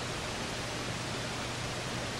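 Steady, even hiss with a faint low hum running under it, the constant background noise of the recording.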